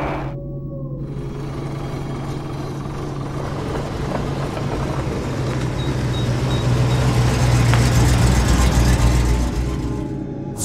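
Low, steady engine-like rumble with a deep hum, swelling louder about seven seconds in and easing off near the end.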